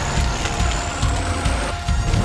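Sound-design rumble of burning aftermath after an explosion: a deep, dense rumble with a thin high whine that rises slowly in pitch.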